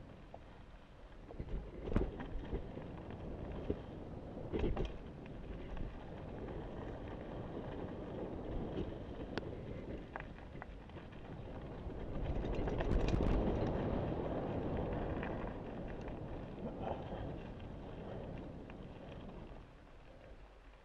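Mountain bike riding fast down a dirt singletrack: tyres rolling over dirt and leaf litter with a steady rush of wind on the microphone. Sharp knocks and rattles from the bike at about 2 and 5 seconds in, and a louder rush of noise from about 12 to 14 seconds in.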